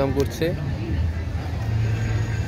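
Steady low rumble of road traffic, a vehicle's engine on a city street, under an even outdoor noise; a voice trails off in the first half-second.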